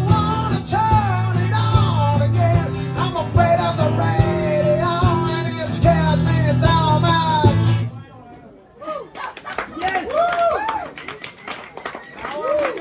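A man singing with a strummed acoustic guitar, the song ending abruptly about eight seconds in. Then scattered audience clapping with a few voices calling out.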